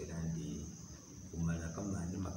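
A man speaking, with a pause about a second in, over a steady high-pitched whine or trill that runs on unchanged throughout.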